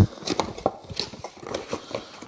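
Cardboard packaging being handled and lifted out of a box: a sharp knock at the start, then a run of small taps, scrapes and rustles.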